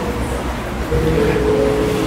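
Sustained, steady tones from an amplified instrument over a low amplifier hum: a short held note at the start, then a longer held note with a second pitch joining about a second in.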